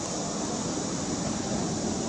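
Steady low background noise with no distinct sounds in it.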